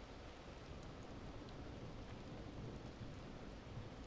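Faint, steady rain.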